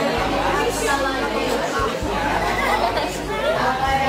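Overlapping chatter of many students talking at once in a classroom, with no single voice standing out, over a steady low rumble.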